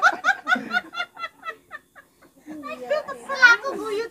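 Hearty laughter: a quick run of short 'ha' bursts, about five a second, that fades out within the first two seconds. After a short pause a voice comes in again, rising and falling.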